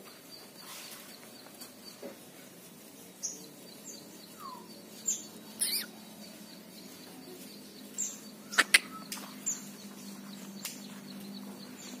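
Scattered short, high bird chirps and calls from caged songbirds, with one lower falling note, and two sharp, loud chirps close together about eight and a half seconds in.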